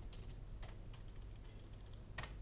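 Computer keyboard being typed on: a quick run of faint keystrokes as a word and a row of dashes are typed.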